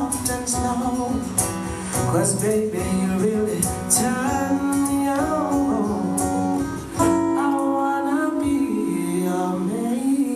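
Live acoustic music: a strummed acoustic guitar with hand-slapped cajon beats and a singing voice.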